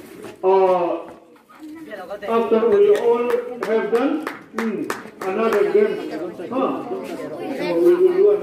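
Voices of a group of schoolchildren chattering and calling out, with a few sharp clicks.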